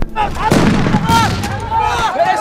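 A sudden loud crash at the very start and a second about half a second in, followed by a noisy din with many men shouting.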